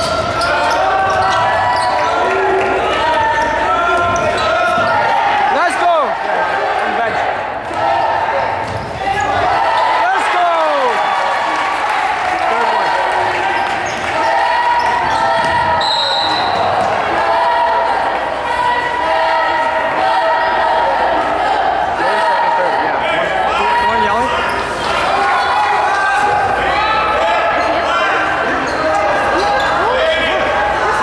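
Basketball game in a gym: the ball dribbling on the hardwood court under steady, overlapping crowd voices that echo in the large hall.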